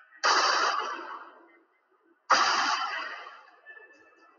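Two pistol shots about two seconds apart, each a sharp crack that dies away over about a second, heard as a TV soundtrack played through classroom speakers with room echo.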